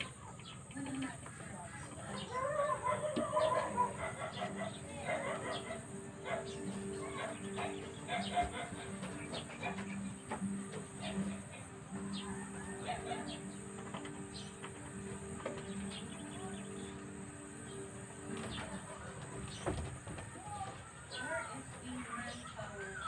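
Rooster crowing about two to four seconds in, followed by scattered bird calls, over a steady low hum and a constant high hiss.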